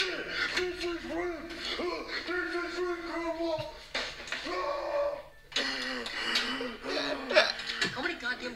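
Voices talking and exclaiming without clear words, with a short gap about five and a half seconds in.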